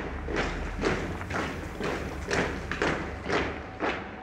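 A steady series of thumps, about two to three a second, over a low steady hum.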